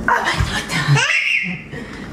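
A baby laughing: a burst of high-pitched laughter with a rising squeal about a second in, stopping shortly before the end.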